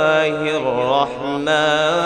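A man's voice chanting Arabic Quran recitation over a stage microphone in long, drawn-out melodic phrases that waver in pitch. There is a brief break about a second in.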